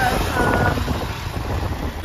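Wind rushing over the microphone and road noise from a moving car, a steady low rumble.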